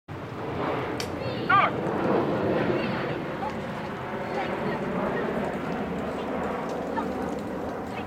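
People's voices calling out over a steady hiss, with a sharp click about a second in and a brief, loud, rising high-pitched call just after it.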